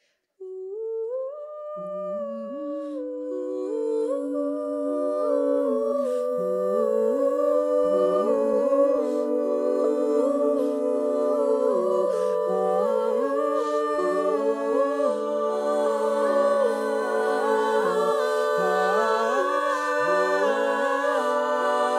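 A cappella vocal ensemble humming wordless, sustained harmony with no instruments. One voice enters about half a second in, others join over the next few seconds, and the chord grows fuller and louder.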